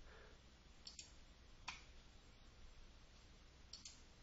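Near silence, with about three faint computer mouse clicks.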